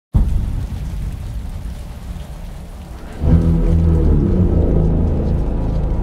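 Trailer sound design: a low rumble over a hiss of rain starts suddenly. About three seconds in, deep sustained music tones come in louder and hold.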